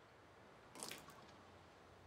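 A short splash of whiskey poured from a bottle into a glass, about a second in.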